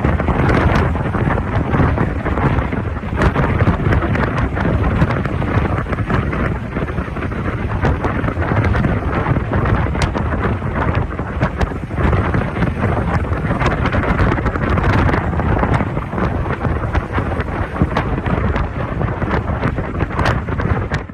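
Heavy wind buffeting on the microphone from a moving vehicle at road speed, a continuous low rumbling noise over road and engine noise, with scattered crackles.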